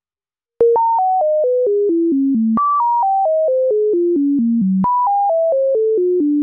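Moog Modular V software synthesizer playing a sine-wave tone whose pitch is set by a sample-and-hold clocked at about four steps a second and fed a descending sawtooth: a descending staircase. The pure tone starts about half a second in, steps down from high to low in even jumps, then leaps back up and repeats, about every two seconds.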